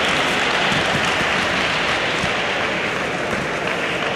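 Spectators in a sports hall applauding, a dense even patter that eases off a little near the end.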